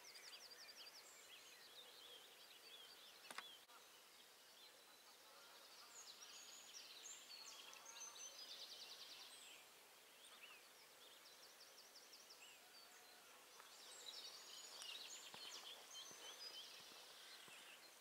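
Faint dawn chorus of several songbirds singing at once, with chirps, trills and fast runs of repeated notes. A single sharp click sounds about three seconds in.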